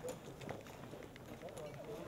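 Faint background chatter of several people talking, with a few scattered light clicks.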